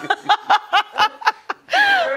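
A woman laughing hard in a quick run of short laughs, about four a second, then a longer drawn-out laugh near the end.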